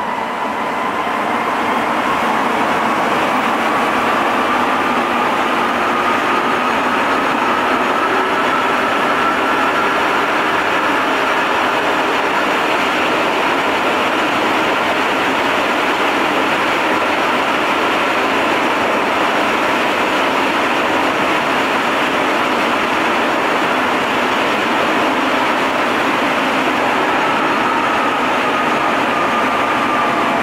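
Sapporo Municipal Subway Namboku Line 5000 series rubber-tyred train running between stations, heard from inside the car: a steady running noise with a faint whine that rises slowly in pitch over the first ten seconds, fades, and comes back near the end.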